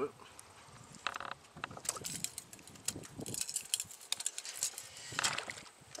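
Fishing tackle being worked as slack is reeled in and a jerkbait is pulled through the water: a run of quick clicks and rattles, thickest in the middle of the stretch.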